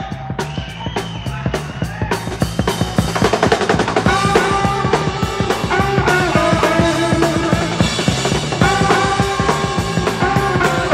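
Live blues band starting an uptempo boogie, with drums, bass and electric guitar, growing louder a couple of seconds in.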